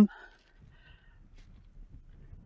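Faint, low wind rumble on the microphone in an exposed outdoor pause, with a brief faint breath-like sound under a second in.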